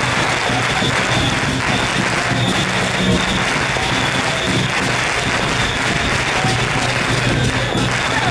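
Temple procession music mixed with a dense crackling that holds steady without a break.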